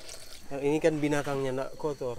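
A man speaking quietly, softer than the narration either side. In the first half second, palm sap pours faintly into a plastic funnel before the stream stops.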